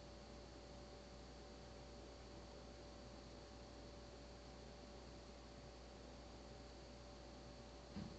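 Near silence: room tone with a steady faint hiss and hum.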